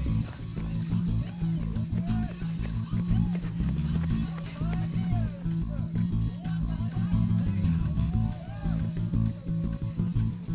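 Guitar-led music with a bass guitar, playing steadily with a pulsing low end.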